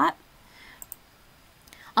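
A couple of faint, short clicks at a computer a little under a second in, amid quiet room tone.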